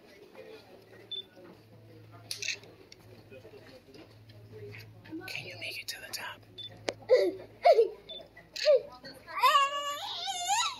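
A child's voice: a few short grunts or yelps, then near the end a drawn-out high-pitched squeal.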